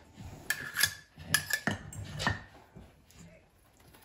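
Metal spoon clinking and scraping against a metal measuring cup while scooping soft butter. About six light clinks fall in the first two and a half seconds, some with a brief metallic ring.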